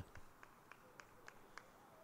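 Near silence: faint outdoor ambience with a few soft ticks.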